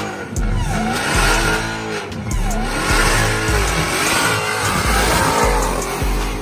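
A car doing donuts: the engine revs up and down about once a second while the tires squeal and smoke, over music with a heavy bass beat.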